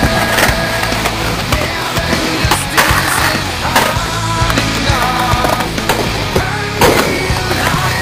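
Skateboard rolling on concrete pavement, with several sharp clacks of the board hitting the ground, over loud rock music.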